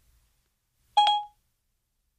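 A single short electronic chime from Siri on a phone, about a second in: the tone that marks Siri has finished listening to the spoken question and is fetching an answer.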